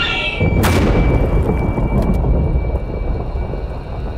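The tail of a woman's terrified scream, cut off by a sharp crack under a second in, followed by a loud, low rumble that eases slightly toward the end.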